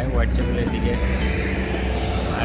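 Street traffic with a red double-decker bus's engine running close by as it pulls past, a steady low sound under the rest.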